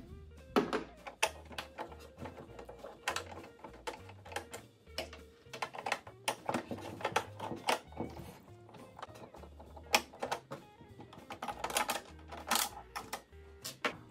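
Background music with a low, stepping bass line, over repeated sharp clicks and light knocks of a screwdriver and hands working the screws out of a sewing machine's plastic housing.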